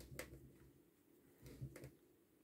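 Near silence with faint handling sounds of crocheting: a metal crochet hook pulling yarn through stitches, heard as two soft bumps with light clicks, one at the start and one about one and a half seconds in.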